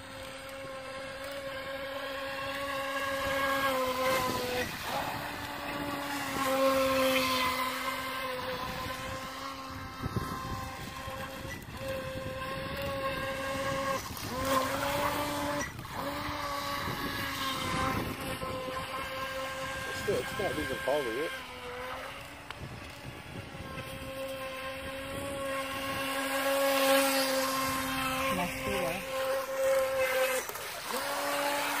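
Feilun FT012 RC racing boat's brushless motor whining at speed: a steady high-pitched tone that dips and returns several times as the boat slows and speeds up again.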